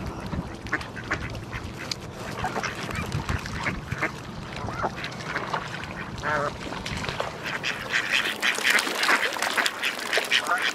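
A flock of waterfowl calling: many short calls overlapping, growing busier and louder in the last couple of seconds.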